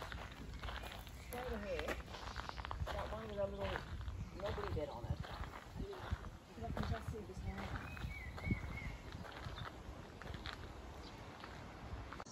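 Faint voices of people talking, with footsteps on gravel and a low wind rumble on the microphone.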